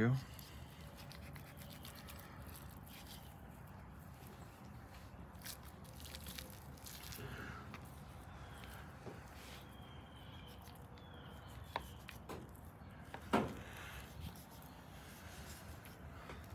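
Quiet knife work on a raw beef tenderloin: a knife blade sliding under the silver skin, with faint rubbing and small clicks over a low steady background. One brief louder sound about 13 seconds in.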